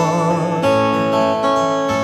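Acoustic guitar strummed in a folk song, changing chord about half a second in and again near the end, with a sustained melody line held over it.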